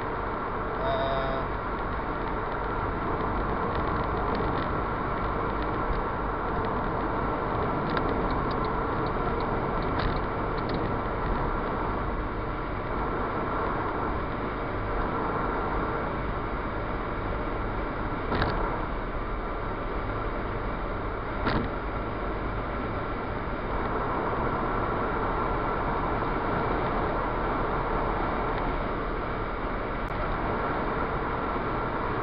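Ford Fiesta Mk6 driving at motorway speed, heard from inside the cabin: a steady drone of engine and tyres on the road surface. Two brief clicks come about two-thirds of the way through.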